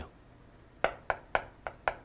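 Chalk tapping and clicking on a chalkboard while characters are written, a quick irregular run of sharp taps that starts about a second in.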